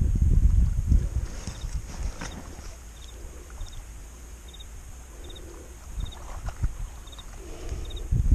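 An insect chirping in short triplets, about one every three-quarters of a second, over a faint steady high drone. A low rumbling noise on the microphone is loudest in the first second and then dies down.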